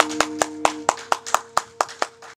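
Clapping at a steady pace, about four or five claps a second, as the last acoustic guitar chord of the song rings out underneath.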